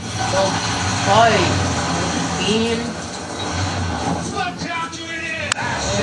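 A cat growling in protest at being held, a low growl broken by a few drawn-out, wavering yowls, the first about a second in.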